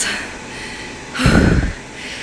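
A single heavy, out-of-breath exhale gusting onto the phone's microphone about a second in, after a four-mile treadmill run, over a steady background hum.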